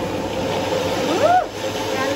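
Single-serve personal blender running steadily at speed with a motor whine, blending blackberries and ice cream into a smoothie. A brief voice comes in over it about a second in.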